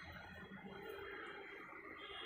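Faint room tone: a steady low hiss and hum with no distinct event.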